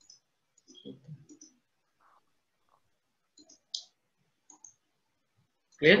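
A few faint computer mouse clicks, scattered and irregular.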